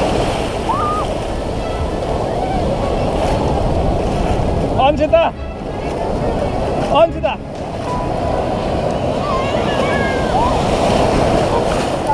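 Breaking sea surf, with waves and foam churning around bathers and the camera. There are two louder, muffled surges of water about five and seven seconds in, and faint distant voices under the wash.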